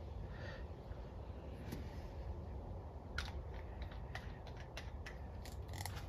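A quiet, steady low hum with a few faint small clicks and ticks scattered through it, from a touch-up paint brush being handled and dabbed on a car body.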